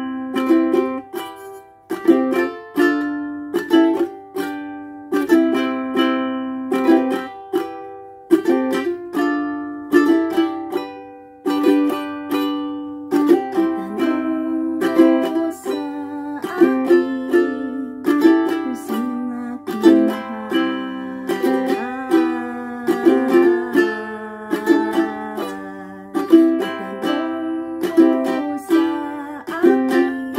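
Acoustic ukulele strummed in a steady rhythm, each chord ringing out and the chords changing through the song.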